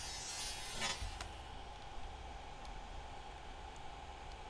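Quiet background: a low steady hum with a faint hiss in the first second and a single soft click about a second in.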